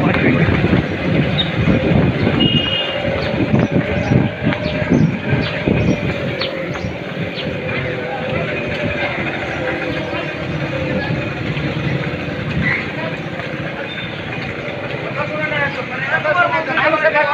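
Street ambience: a loud, continuous low rumble, strongest over the first six seconds, with indistinct voices underneath.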